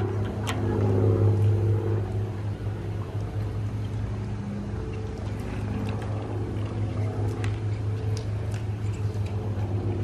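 Pool filter pump motor running with a steady low hum, drawing water through the vacuum hose, with a few faint knocks.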